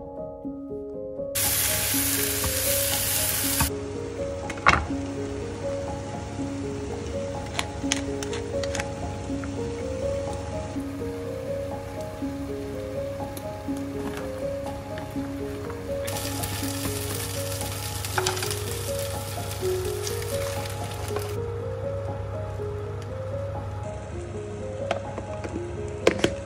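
A potato, onion and mozzarella frittata sizzling as it fries in a pan, under background music. The sizzle swells for a couple of seconds near the start and again in the middle, with a few sharp knocks of utensils.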